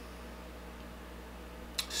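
Quiet room tone with a steady low hum. Near the end, a short sharp mouth sound, a lip smack or intake of breath, just before speech begins.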